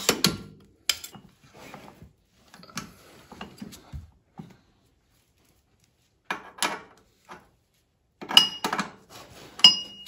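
Short metallic clicks, knocks and clinks from a scissor jack and steel kart-chassis parts being handled, with a quiet gap midway. Near the end come two sharp clinks that ring briefly.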